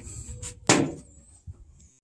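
A single sharp knock or bang about two-thirds of a second in, with low rustling and handling noise around it. The sound drops out for a moment near the end.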